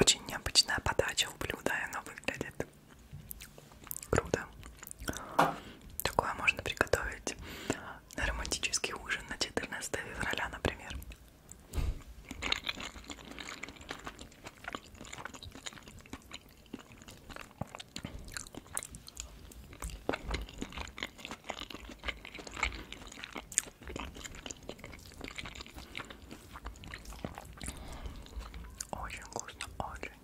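Close-miked chewing of Thai shrimp fried rice, with wet mouth sounds and many small clicks. Now and then a metal fork scoops rice from the pineapple shell.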